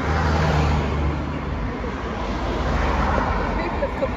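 Cars passing close on a dual carriageway: engine hum and tyre noise from a near car at the start, then a second wave of road noise about three seconds in as another car goes by.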